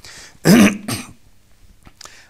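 A man clears his throat: a loud, rough cough-like burst about half a second in, then a second short one just after.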